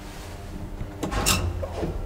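Elevator car door sliding shut and banging closed about a second in, followed by a short rattle, over the low hum of the car.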